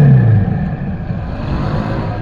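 Motorcycle engine in neutral: its revs fall away just at the start and then settle to a steady idle as the bike coasts slowly.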